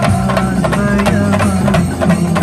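Chenda drums beaten with sticks by a marching drum troupe, a dense stream of rapid strokes, with sustained melodic notes sounding along with them.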